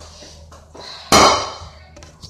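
A phone being grabbed and picked up: one sudden loud thump and rustle of handling on its microphone about a second in, fading quickly, against quiet room tone.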